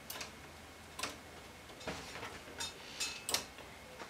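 Light metallic clicks of Silver Reed 840 knitting-machine needles being pushed by hand along the needle bed into forward position, one needle at a time. About seven irregular clicks in four seconds.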